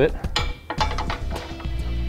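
A Phillips screwdriver's metal tip clicking and scraping against the steel weld-nut plate inside a vehicle frame as it is pried over to line up the bolt holes, with a few short clicks in the first second over steady background music.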